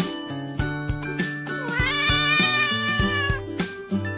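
A cat gives one long meow, rising and then holding for about two seconds, starting about a second and a half in, over background music with a regular beat.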